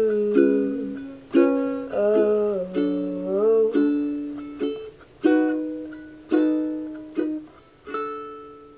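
Ukulele playing slow, separate strummed chords about a second apart, each left to ring and fade. A short wordless vocal line glides over the chords from about two to four seconds in.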